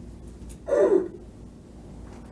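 A person's short gasp with falling pitch, less than a second in, lasting about a third of a second.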